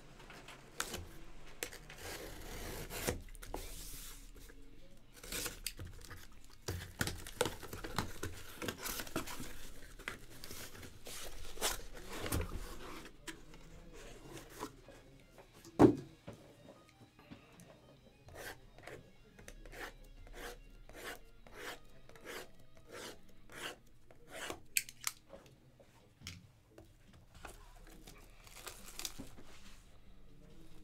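A cardboard shipping case being torn open and sealed card boxes pulled out of it: tearing and rubbing of cardboard, then one loud knock about halfway through, followed by a run of light, quick knocks, about two a second, for several seconds.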